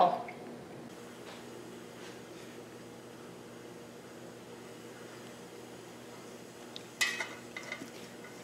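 A metal spoon clinks and scrapes against a stainless steel stockpot in a short clatter about seven seconds in, after several seconds of faint steady room hum.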